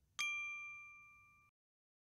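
A single bright chime-like ding, struck once, ringing with a few clear tones and fading evenly before it cuts off abruptly.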